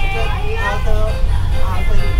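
Steady low engine and road rumble of a moving open-sided tour bus, heard from inside the cabin, with music and voices over it.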